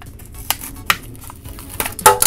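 Clear plastic blister pack of a Hot Wheels car being torn and peeled away from its cardboard card. A few sharp plastic crackles come about half a second in, near one second, and in a quick cluster near the end.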